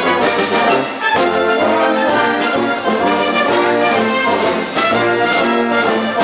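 Military wind band playing live, with clarinets, saxophones and brass together in a full chordal tune whose notes change about twice a second.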